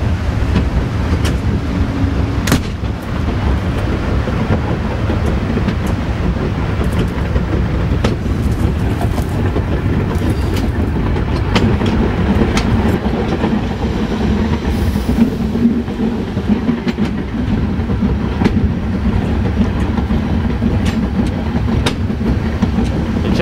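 Metre-gauge train running along the track, heard from the rear cab: a steady rumble of wheels on rail with scattered clicks from rail joints. A low hum grows stronger about halfway through.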